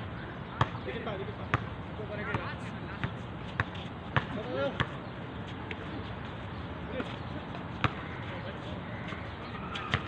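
Basketball bouncing on an outdoor hard court: a run of sharp, irregularly spaced bounces as it is dribbled and passed, with players' distant shouts between them.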